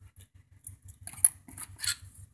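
Thin cut-out panel pieces being handled over a wooden desk: a few light clicks and scrapes, the sharpest just past halfway and a couple more near the end.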